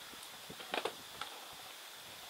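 Quiet background hiss with a few faint, brief ticks and rustles a little under a second in and again just after a second.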